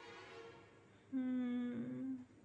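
A person humming "hmm" while thinking over an answer: a short, soft hum at the start, then a louder, lower hum held for about a second.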